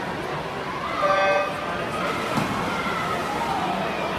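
An electronic starting horn sounds one short beep, about half a second long, a second in, starting a swim race, over steady crowd chatter in a large pool hall.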